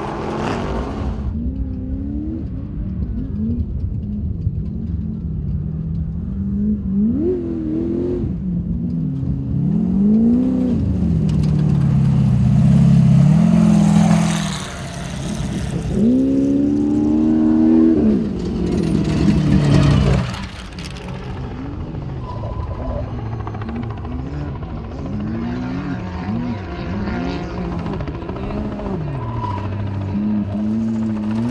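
Off-road race vehicles driving along a dirt course, their engine notes repeatedly climbing and dropping as the throttle is worked. The loudest passes come about 13 and 19 seconds in, and the engines run quieter after about 21 seconds.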